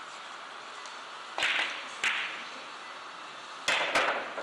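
Carom billiard shot: sharp clicks of the cue striking the ball and of the balls hitting each other, four in all. Two come about half a second apart near the middle and two close together near the end, each with a short ringing tail.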